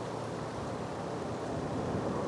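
Steady wind noise outdoors, an even hiss with no distinct events, growing slightly louder near the end.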